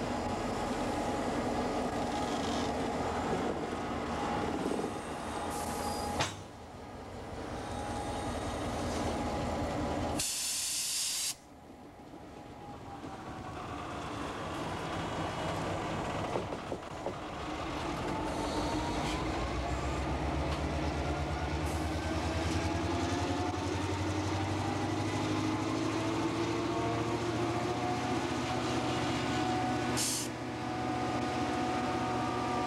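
Soo Line diesel-electric locomotive's engine running, with a loud hiss lasting about a second near ten seconds in. From about seventeen seconds in, the engine pitch rises steadily as the locomotive throttles up.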